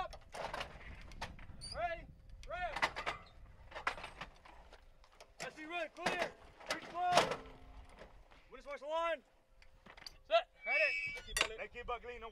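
Metal clanks and knocks from an M777 155 mm towed howitzer being worked by its crew, among repeated shouted gun-crew commands. Two sharper knocks stand out, about seven and ten seconds in.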